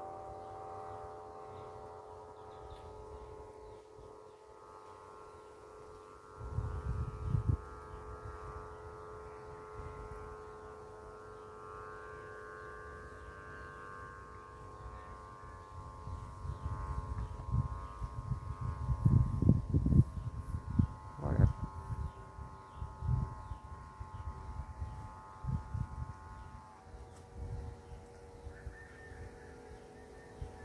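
A steady drone of several sustained tones held together like a chord, unchanging in pitch, with one more tone joining near the end. Wind buffets the microphone in low rumbling gusts from about six seconds in, harder and more often in the second half.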